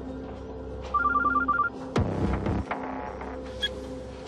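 Mobile phone ringtone: a quick run of short electronic beeps alternating between two pitches, about a second in, over soft background music.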